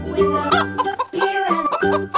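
Chickens clucking over a children's song backing track with steady instrumental notes.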